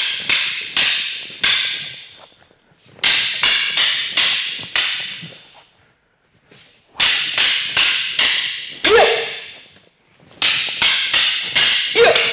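Wooden short sticks striking each other in a five-count partner drill: four runs of about five sharp clacks, each strike ringing briefly, with pauses of a second or two between runs.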